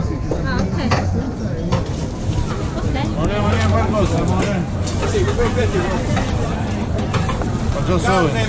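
Knife slicing grilled beef and sausages on a wooden cutting board, the blade tapping on the board now and then, under steady chatter of nearby voices.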